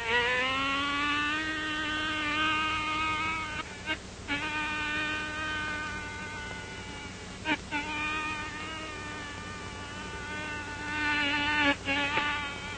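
A man imitating a buzzing bee with his voice: a steady, nasal buzz that slides up in pitch at the start, holds with a couple of short breaks, and swells louder near the end.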